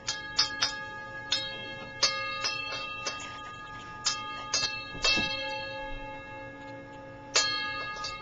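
Tibetan singing bowl struck over and over at uneven intervals, about a dozen strikes, each one ringing on with a cluster of bright tones that overlap the next strike.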